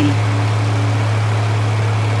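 Heavy truck engine of a mobile crane running with a steady low hum.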